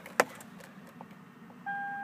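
A sharp click, then about a second and a half later a steady electronic beep tone from the car starts and holds.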